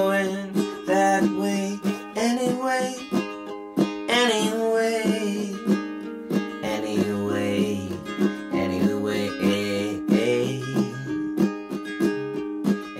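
Small acoustic guitar playing an instrumental passage: a picked melody with some bent notes over ringing chords, with lower bass notes joining about halfway through.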